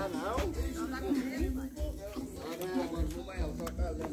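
Indistinct voices talking, softer than a nearby speaker, with an intermittent low rumble underneath.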